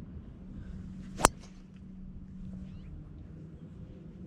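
A driver striking a golf ball off the tee: one sharp click a little over a second in, over faint background noise.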